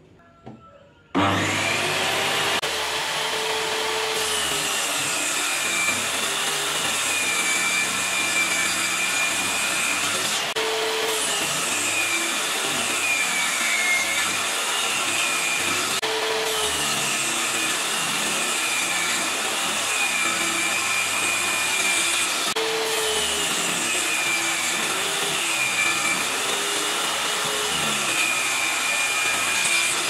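Table saw starting up about a second in and running steadily, its whine dipping and recovering again and again as the blade is loaded by cuts through birch plywood.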